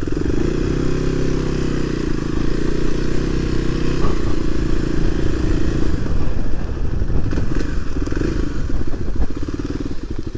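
Kawasaki KLX300 dirt bike's single-cylinder four-stroke engine running at a steady low speed as the bike rides over grass. In the second half its note becomes uneven, with a few knocks and rattles.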